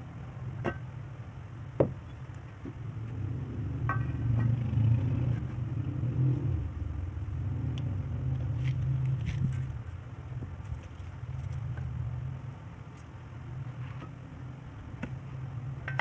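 A steady low rumble, swelling midway and easing off again, with a few knocks of a brick being handled and set down; the sharpest knock comes about two seconds in.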